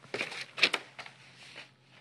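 Corrugated paper rustling and crinkling as a paper hat is handled under a hand hole punch, with one sharp crunching click about a third of the way in.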